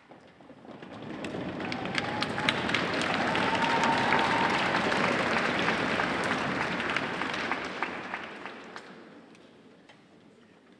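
Audience applauding, swelling over the first couple of seconds and dying away near the end, with one drawn-out rising call from the crowd in the middle.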